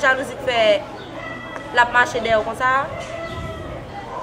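A rooster crowing over a woman's speech.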